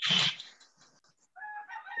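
A brief rubbing rustle of a hand handling the call microphone, then a faint pitched sound near the end.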